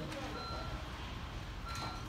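Electronic warning beeps, a short high beep about every second and a half alternating with a lower tone, over a steady low rumble of traffic or machinery.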